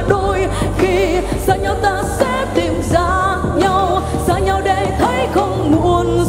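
A woman singing a slow pop ballad into a microphone over a live band backing, holding long notes with a wavering vibrato.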